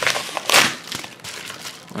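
Plastic packaging crinkling and rustling as it is handled, with one louder rustle about half a second in and a few small clicks.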